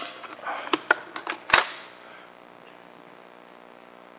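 A few small clicks and scrapes of a part being worked loose from inside an X-ray tube head, the sharpest click about one and a half seconds in.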